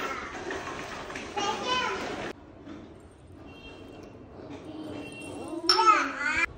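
Young children's voices at play: high-pitched calls and babble, with a loud child's shout near the end.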